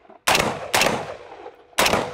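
AR-15 rifle fitted with a muzzle brake firing in pairs: two shots about half a second apart, then a third near the end, each trailing off in a short echo.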